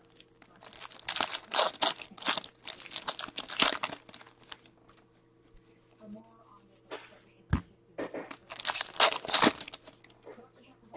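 Foil trading-card pack wrapper being crinkled and torn open in two bouts: the first lasts about three and a half seconds, the second comes near the end. A couple of soft knocks fall between them.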